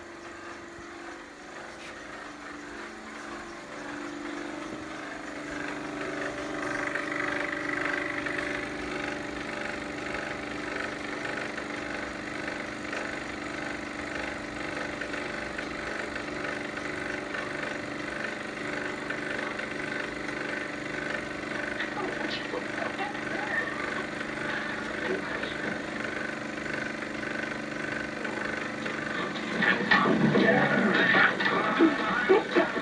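A steady engine-like mechanical hum that grows louder over the first several seconds, then holds steady.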